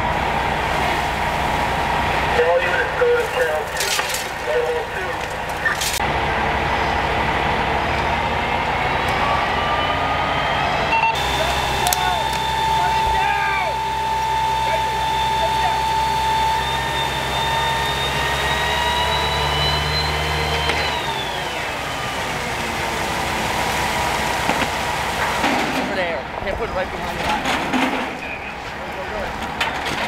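A fire truck's engine running at the fire scene. About a third of the way in it revs up into a steady whine that climbs slowly for about ten seconds, then falls away, over a constant background din.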